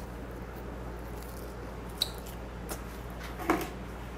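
A man chewing a whole grilled gizzard shad, bones and all, with quiet mouth sounds over a steady low room hum. There is a sharp click about two seconds in and a short, louder sound about three and a half seconds in.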